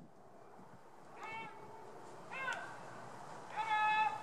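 Three short, pitched animal calls about a second apart, each rising and falling in pitch, the third longer and held, over faint steady outdoor noise.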